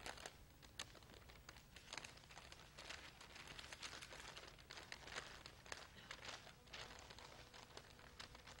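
Faint crackling and rustling of a large sheet of stiff paper as a rolled scroll is unrolled and held open, in many short irregular crackles.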